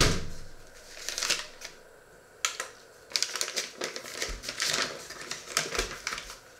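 A thump, then a paper bag being handled, crinkling and rustling in irregular bursts.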